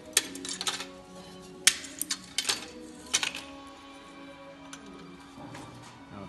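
Small cut wooden blocks clicking and knocking against each other as they are handled and set down, a scatter of sharp clicks that thins out after about three and a half seconds. Steady background music plays behind.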